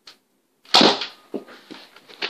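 Nerf Mega dart blaster firing once: a single sharp spring-air shot about three-quarters of a second in, followed by two fainter knocks.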